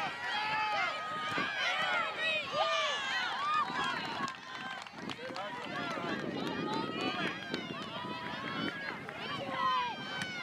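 Many distant, high-pitched voices of players and sideline spectators shouting and calling across an open soccer field, overlapping, with no clear words. The calls thin out briefly a little before the middle.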